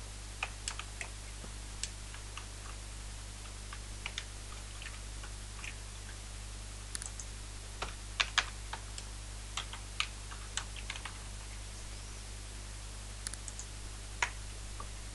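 Computer keyboard being typed on in short, irregular runs of keystrokes with pauses between them, the busiest and loudest run about eight seconds in, over a steady low hum.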